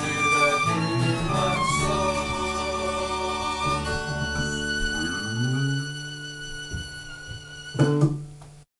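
A small band of violin, guitar and bass playing the closing bars of a song, the violin's sustained notes on top. About five seconds in a low note slides up, and the last chord fades. A sudden loud hit comes near the end.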